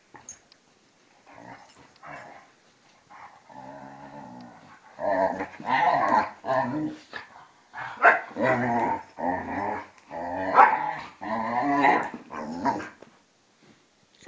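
Dogs growling in rough play, a vizsla and a German shorthaired pointer play fighting. After a few quiet seconds a low growl starts, then builds into loud, repeated growling bouts with sharp peaks.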